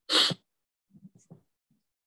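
A person sneezes once, a short sharp burst right at the start, followed by a few faint short sounds.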